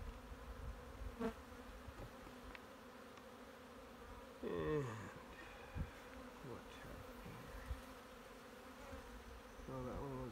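Honeybees buzzing over an open hive, a steady hum, with a louder buzz falling in pitch about four and a half seconds in. A few light knocks sound through it.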